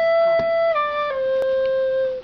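Plastic recorder blown through the nose, playing a slow melody: a long held note that steps down twice, settling on a lower held note near the end.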